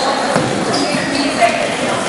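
Basketball game in a gym: a ball bouncing on the hardwood court, with short high sneaker squeaks and spectators' voices echoing around the hall.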